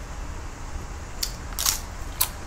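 Crunchy tortilla chip bitten and crunched, a faint crackle just past a second in and a louder crunch about one and a half seconds in, over a low steady hum.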